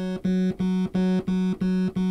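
Yamaha TG77 FM tone generator playing one low note over and over, about three times a second: a bright sawtooth tone from two operators, Operator 2 with its phase sync turned off. Each strike starts at a different point in the waveform, so the tone and the loudness shift a little from note to note.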